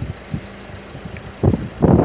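Wind buffeting the microphone: a low rushing that gusts briefly about a second and a half in and turns loud and rumbling near the end.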